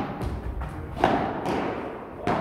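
Padel ball being struck by rackets and bouncing during a rally: several sharp knocks, the loudest about a second in, each ringing on in a large hall.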